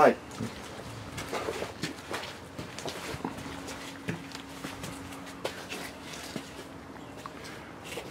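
Footsteps and light handling rustle of people walking across a dirt and grass yard, with a faint steady hum in the middle.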